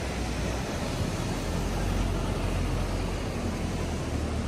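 Steady rushing noise of sea waves breaking over rocks, with a deep, uneven rumble underneath.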